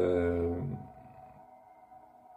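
A voice holding a drawn-out hesitation sound for under a second, then a pause over soft, steady ambient background music.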